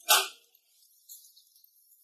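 A document folder tossed at someone and landing: one short, sharp slap about a tenth of a second in.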